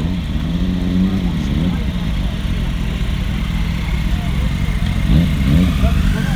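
Motorcycle engines running in a car park, with a rise and fall in revs about a second in and again near the end as a bike is blipped and ridden off. Voices chatter behind.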